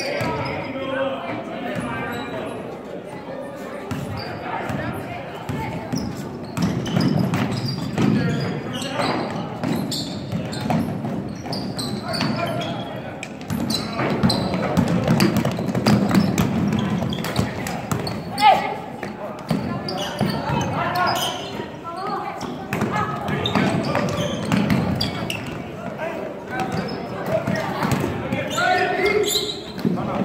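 A basketball dribbled and bouncing on a hardwood gym floor during play, amid voices of players and spectators in the echoing gymnasium.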